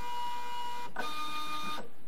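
Zebra 220Xi III Plus industrial thermal-transfer label printer feeding label stock as it prints its sensor profile. Its motor gives a steady whine that shifts pitch about a second in and stops shortly before the end.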